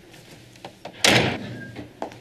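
A door slammed shut once, about a second in, after a couple of faint clicks.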